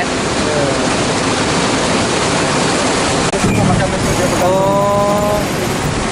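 Steady rush of water at a river weir, mixed with wind on the microphone, with a brief low rumble about halfway through.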